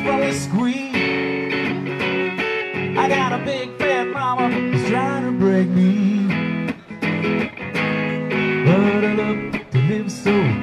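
Live band playing a rock song, with electric guitar lines that bend in pitch over drums.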